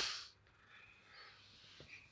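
A short breathy exhale at the very start, then near silence with faint rustling and a small click.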